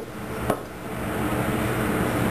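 Steady hum of room air conditioning, with one sharp knock about half a second in.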